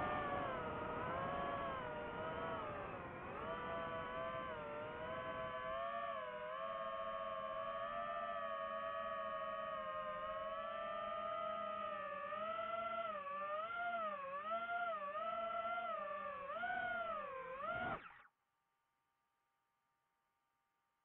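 DJI FPV drone's motors and propellers whining, the pitch rising and falling as the throttle changes. A rushing noise lies under it for the first several seconds. The whine cuts off suddenly about 18 seconds in.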